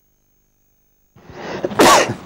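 Dead silence for about a second, then a person sneezes: a short rising build-up followed by one loud burst near the end.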